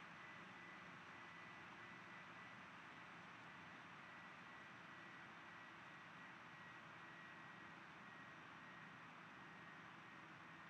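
Near silence: a steady faint hiss of room and microphone noise, with a thin, faint high-pitched tone running through it.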